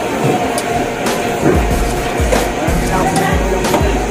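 Music with a steady bass beat.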